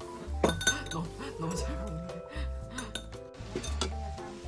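Metal chopsticks and spoon clinking against a ramen pot and bowls: a few sharp clinks about half a second in and another near the end, over light background music.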